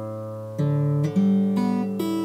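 Steel-string acoustic guitar: single notes fretted and plucked one after another, with three new notes in the second half. The earlier notes keep ringing under the new ones, because the arched fretting fingers clear the neighbouring strings.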